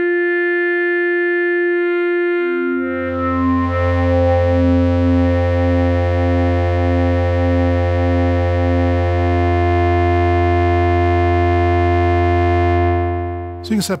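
Synthesizer drone from a ModBap Osiris digital wavetable oscillator: a single steady tone, joined about two seconds in by a deep low note and a pulsing middle tone whose interval shifts under slow random modulation. The drone fades out near the end.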